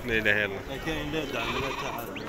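Sheep bleating in a crowded pen, with men's voices talking around the flock.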